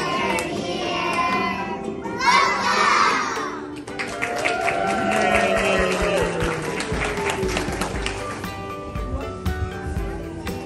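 A class of young children singing together over a backing track, in a large, echoing hall. About four seconds in the singing breaks off and music carries on.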